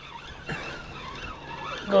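Spinning fishing reel being cranked to wind in line, a steady mechanical sound starting about half a second in.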